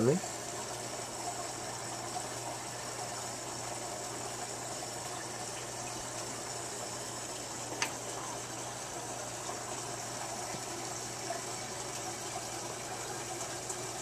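Aquarium aeration and filter running: a steady stream of bubbling water with a constant low hum. A single short click about eight seconds in.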